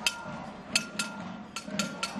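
A metal saucepan banged with a utensil as a protest noisemaker: sharp ringing metallic strikes in two quick pairs, four strikes in all.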